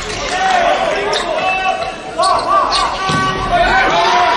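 Volleyball rally on an indoor court: the ball is struck sharply a few times, about a second in and again near three seconds, amid players' voices and other court sounds in a large hall.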